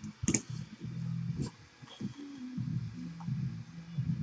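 A few sharp clicks, one just after the start and another about a second and a half in, with smaller ticks between, over a faint low hum.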